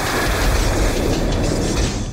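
Loud, steady rushing sound effect of a magic energy beam being fired, with a pulsing low rumble beneath it.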